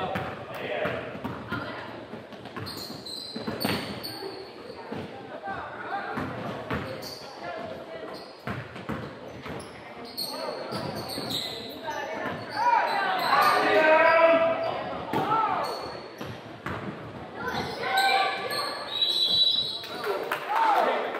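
A basketball bouncing on a hardwood gym floor, with players' and spectators' voices calling out, echoing in a large gym hall. The voices are loudest for a few seconds from about twelve seconds in.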